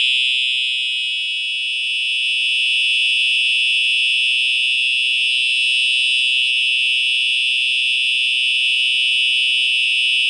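Simplex 4901-9820 remote fire alarm horn sounding in alarm, a steady unbroken high-pitched blare, driven by the fire panel after a pull station was activated.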